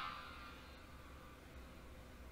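Very quiet pause with a faint steady low hum; a voice trails off in the first moment.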